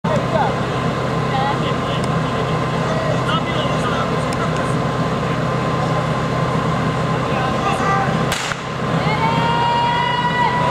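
An engine running steadily under crowd voices; about eight seconds in a single sharp crack, after which the engine note rises in pitch.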